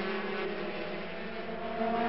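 A pack of 125cc two-stroke racing motorcycles running at high revs, heard together as a steady drone of several engine notes.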